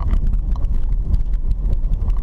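Car driving on a dirt road, heard from inside the cabin: a steady low rumble from the tyres and body, with many small clicks and rattles throughout.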